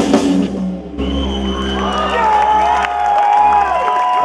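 A heavy metal band playing live with full drums breaks off about half a second in. After that comes a loud crowd shouting and cheering in long, overlapping calls.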